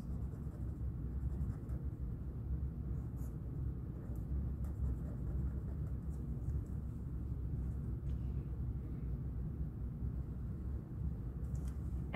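Black felt-tip marker drawing small marks on a paper sticky note: faint, scattered scratchy strokes over a steady low hum.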